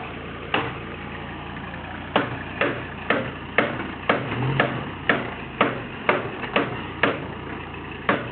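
A hammer strikes sheet-metal bodywork: a single blow, then from about two seconds in a steady two blows a second. The fender is being beaten back so that big Super Swamper tyres stop catching on it. Under the blows a truck's diesel engine runs slowly and steadily.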